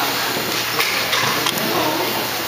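Steady workshop room noise with faint background voices, and a light click about halfway through as the circuit board is handled into its metal chassis.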